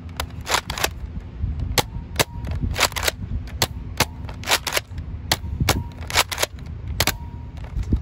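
Nerf Rough Cut, a spring-powered pump-action dart blaster, being pump-primed and fired with its two-stage trigger over and over. The result is a run of many sharp plastic clacks and pops, one dart for each stage of the trigger pull.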